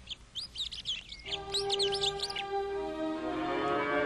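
Birds chirping in quick repeated calls for the first two seconds or so, while gentle orchestral music with long held string notes fades in about a second in and grows fuller.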